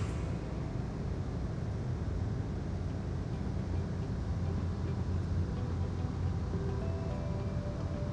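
Amtrak passenger train running at speed, heard from inside the carriage as a steady low rumble.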